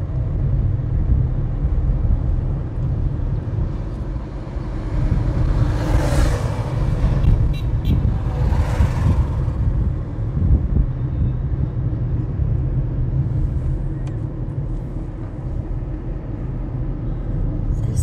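Road noise from a moving car: a steady low rumble of engine and tyres, with two louder rushing swells about 6 and 9 seconds in as oncoming tipper trucks pass close by.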